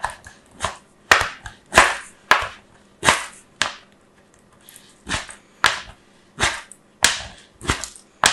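A bar of soap being grated on a purple plastic grater: a dozen or so short rasping strokes, one or two a second, with a pause about halfway through.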